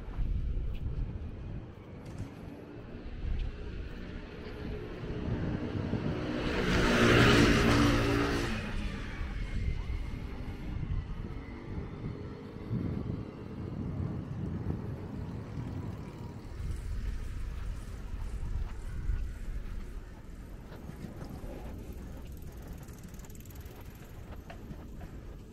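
A vehicle passes close by on the road: its engine hum and tyre noise swell to a peak about seven seconds in and then fade, over a low steady rumble of distant traffic.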